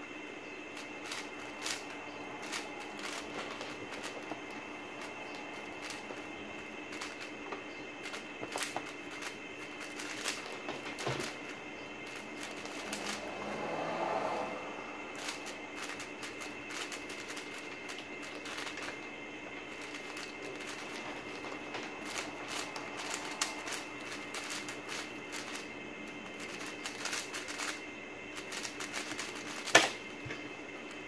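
WuQue M 4x4 speedcube being turned fast by hand, a continuous clatter of plastic layer-turn clicks. Just before the end a single sharp slap on the keyboard stops the timer.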